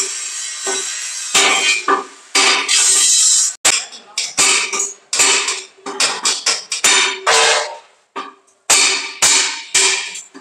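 Hammer blows on the sheet steel of a tack-welded concrete-mixer drum: a dozen or so irregular strikes, each ringing briefly, with a short pause near the end.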